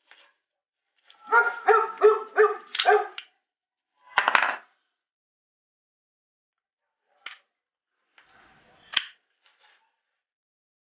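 A dog barks about five times in quick succession, then once more a second later. Later come two sharp plastic clicks as a plug head is fitted onto a small charger.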